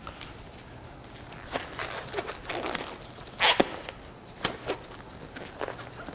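Exam glove being pulled onto a hand: a scattered series of short snaps and rubbery rustles, the loudest about three and a half seconds in.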